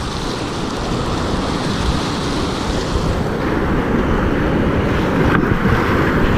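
Rushing whitewater of a river rapid, loud and steady, churning close around a kayak as it runs down the drop, with wind noise on the microphone; it grows slightly louder through the run.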